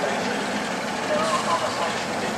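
Class 47 diesel locomotive's Sulzer twelve-cylinder engine running as the train pulls away, a dense steady noise, with people's voices over it.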